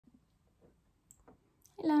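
A quiet room with a few faint clicks of hands on the recording device as it is set up, then a woman's voice starts near the end.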